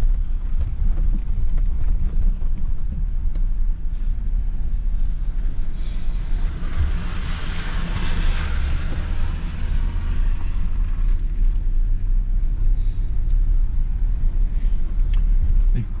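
Jeep Gladiator driving slowly over a rough dirt trail, heard from inside the cab: a steady low engine and drivetrain rumble with scattered knocks and rattles from the bumpy ground. A hiss swells and fades around the middle.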